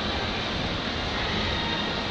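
Steady indoor ambient roar of a large shopping mall: an even rush of air handling and general background din, with no single event standing out.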